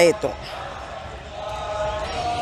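A woman's voice trails off just after the start. Then comes a steady outdoor background with a faint held tone and a low rumble.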